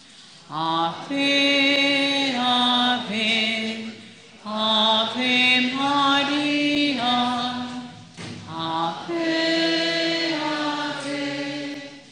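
A devotional hymn sung slowly, in long held phrases about four seconds each with brief breaks for breath between them.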